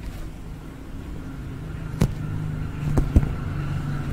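A pencil rubbed across the surface of an inflated rubber playground ball, making a low, steady rubbing drone that builds over the first second. Three sharp taps come on the ball: one about two seconds in and two close together around three seconds.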